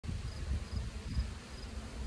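Insects chirping: faint, short, high pulses repeating about twice a second, over an uneven low rumble on the phone's microphone.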